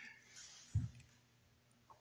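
Faint mouth clicks and breath sounds, with a brief low thump a little under a second in.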